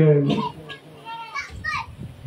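A man's speech breaks off, and in the lull a child's high voice calls out a few times in the background, the clearest call near the end.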